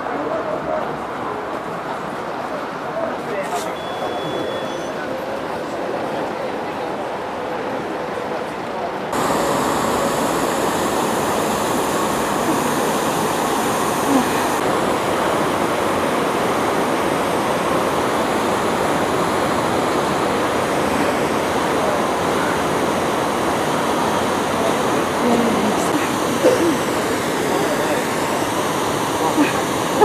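Outdoor ambience: a steady rushing noise with murmured voices, stepping up in loudness about nine seconds in, where it becomes a fuller rush like churning water.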